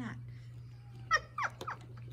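A domestic cat giving three short, quick meows about a second in, each falling in pitch, over a steady low hum.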